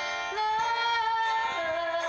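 Pop music with a woman singing a long held note that steps down to a lower note about one and a half seconds in, over a backing track.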